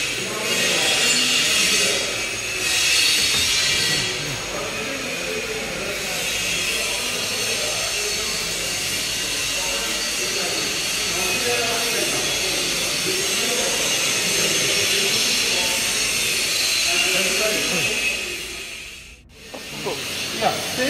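Steady workshop hiss with indistinct voices in the background, louder in two bursts in the first few seconds, then cutting out sharply near the end.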